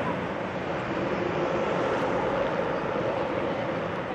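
Steady rushing roar of Niagara's American Falls, a large waterfall, an even, unbroken noise with a faint low drone in it.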